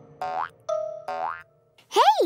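Cartoon sound effect: three short springy boings, rising in pitch, in quick succession over the first second and a half.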